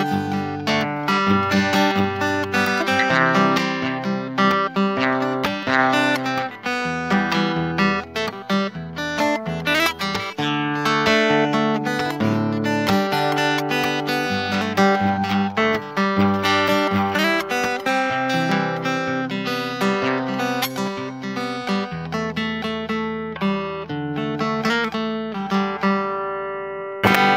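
Acoustic guitar played fingerstyle: a melody picked over bass notes, notes plucked in a continuous run. Near the end a low bass note rings on under the picked melody.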